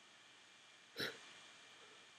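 One short vocal sound from a man about a second in, over a faint steady hiss.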